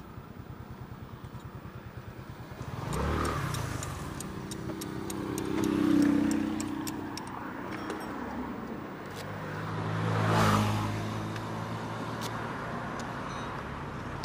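A motorcycle engine idles with a rapid, even pulse. Then two vehicles pass on the road, each engine note swelling and fading, about six and ten seconds in. Light clicks and handling knocks come in between.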